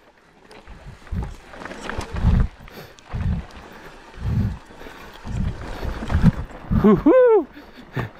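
Mountain bike riding down a steep, rough dirt trail: the rush and rattle of tyres and bike over the ground, with low thuds about once a second. A short whooping shout from a rider near the end.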